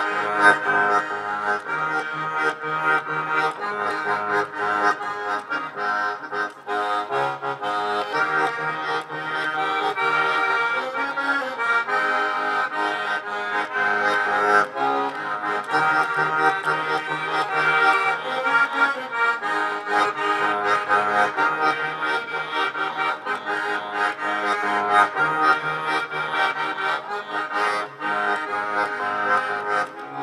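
Diatonic button accordion (Latvian ermoņikas) playing a march-time folk tune: a melody over chords and a steadily pulsing bass.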